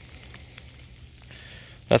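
Steady hiss of sleet falling on grass and pavement, with faint scattered ticks of ice pellets landing.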